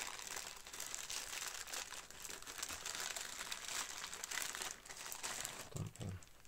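Plastic postal mailer crinkling steadily as it is cut open with a craft knife and pulled off a foil-wrapped parcel.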